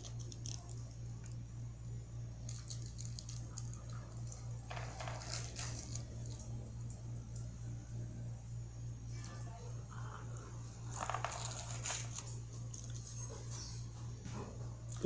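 Faint scrapes of a knife cutting into a slab of set glycerin-soap toilet-block paste in a foil-lined pan, in two short bouts about five and eleven seconds in, over a steady low hum.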